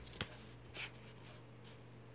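Paper pages of a coloring book being handled and turned: a faint sharp click just after the start and a soft brief paper rustle just before a second in, over a low steady hum.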